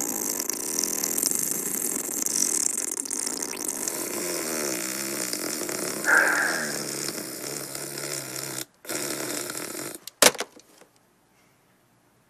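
A child blowing a long, buzzing raspberry into a telephone handset. It breaks off about three-quarters of the way through, and then the handset is hung up with a single sharp clack.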